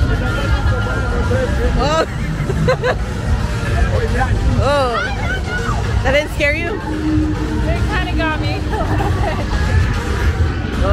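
A dense crowd of people talking and calling out, with several raised, swooping voices, over a steady deep rumble and music.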